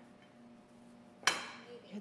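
Faint steady kitchen hum, then about a second in a single sharp clatter of a dish knocking on the stainless steel counter, trailing off briefly.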